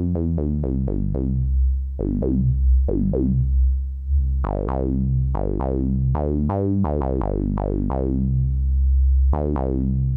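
Modular synthesizer sawtooth notes through a Synthesizers.com Q107a state-variable filter with its resonance turned up. At each keyed note an envelope sweeps the cutoff quickly downward, and the resonant peak stands out as it falls through the harmonics. The notes start in a quick run and then become longer, at changing pitches.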